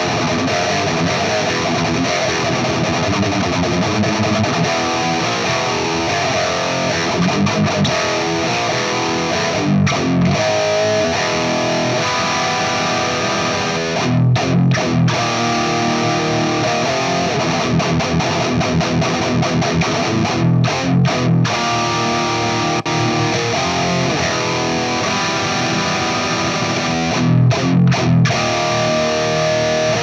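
Heavily distorted electric guitar riffing through a Peavey 5150 high-gain tube amp head, close-miked on a V30 speaker, with heavy low chugs and several brief sharp stops.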